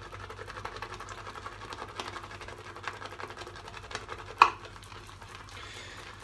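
Blonde boar shaving brush whisking shaving soap into lather in a bowl: a fast, even swishing and ticking of wet bristles against the bowl, with one sharper knock about four and a half seconds in.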